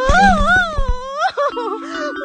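A young woman's drawn-out wail of disappointment, the pitch wavering up and down, breaking into shorter whimpering cries after about a second. There are soft thumps in the first second, over background music with steady held notes.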